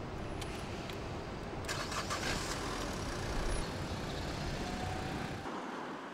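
A car engine being started with the ignition key and then running steadily, with a louder burst about two seconds in.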